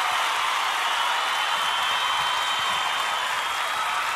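Dense audience applause of a crowd clapping, steady throughout.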